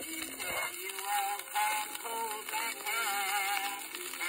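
A 1908 Victor acoustic disc recording of a tenor singing with orchestra. It has the thin, bass-less sound of an early acoustic recording, and the tenor's voice comes in over the orchestra about a second in, with a wide vibrato.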